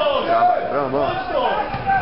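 Several men's voices talking over one another close to the microphone, loud but with no clear words.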